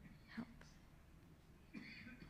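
Near silence, with one faint whispered word of prayer, "help", about half a second in.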